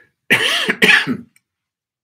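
A man coughs twice into his fist to clear his throat: two short, loud coughs, about half a second apart.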